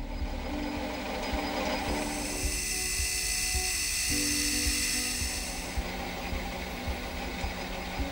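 Metal lathe turning a small screw, with the high hiss of a cutting tool taking a cut from about a second and a half in until about six seconds, over background music.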